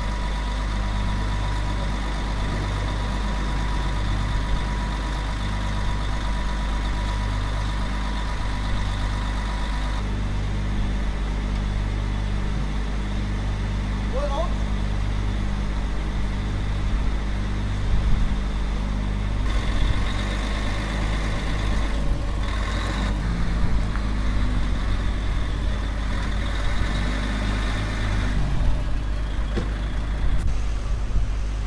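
Heavy truck engine idling, a steady low hum with a slow, even pulse about once a second.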